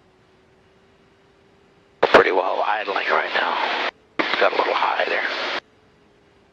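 A voice call over the aircraft's radio: a click as the transmission opens about two seconds in, then two stretches of thin, band-limited radio speech, each cutting off abruptly, with a short gap between. Before it there is only a faint steady hum in the headset audio.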